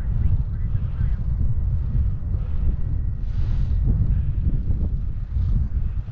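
Wind buffeting the microphone of a camera on a moving bicycle, a loud, steady low rumble.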